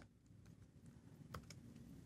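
A few faint computer keyboard keystrokes about a second in, otherwise near silence.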